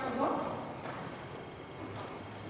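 Several horses walking on the sand footing of an indoor riding arena, their hoofbeats soft and muffled. A voice trails off at the very start.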